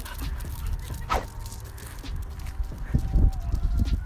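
Dogs playing: one short dog yelp or bark about a second in, over low rumbling and thumps on the phone microphone that are loudest near the end.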